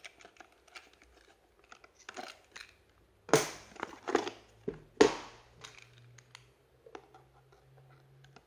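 Cardboard box being handled, its flaps opened and its contents shifted: scattered rustles, scrapes and clicks, the loudest about three and a half and five seconds in.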